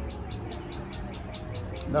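A bird chirping in a quick, even series, about six chirps a second, over low background rumble.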